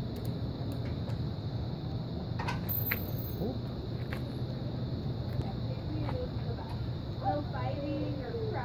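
Steady low background hum with a few faint clicks about two and a half to three seconds in; a voice comes in near the end.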